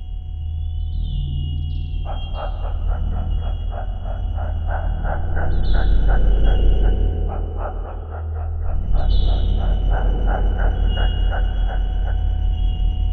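Electronic sci-fi sound design: a deep steady drone under a high steady tone, with short rising chirps. From about two seconds in, a rapid even pulsing of about three to four beeps a second joins it, like a sonar or machine signal.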